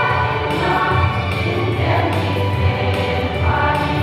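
Women's choir singing together in held, sustained notes that move in pitch every second or two.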